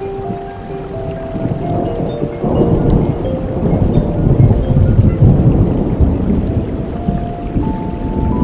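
A long, low rumble of thunder that builds about two and a half seconds in, peaks mid-way and slowly eases, over steady rain.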